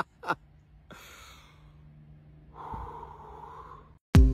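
The last short burst of a person's laugh, then breathing: a breathy gasp about a second in and a longer breath near the end.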